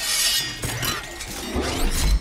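Glass shattering, with shards clinking, over film-score music; a low boom comes near the end.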